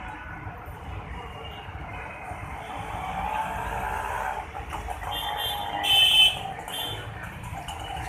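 Outdoor background noise with a steady low rumble like passing traffic, and a brief loud high-pitched sound about six seconds in.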